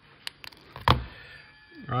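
Wire stripper stripping the insulation off new wire ends: two light clicks, then a sharper snap about a second in.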